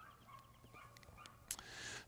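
Near silence: a faint outdoor background with a faint thin tone in the first second and a soft click about one and a half seconds in.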